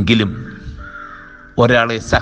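A man speaking over soft background music of steady held notes. A short, harsh, loud sound opens it, then comes a pause with only the music, and the speech picks up again near the end.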